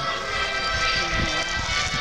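Music with steady held chords, coming from the inauguration broadcast playing on a phone's speaker.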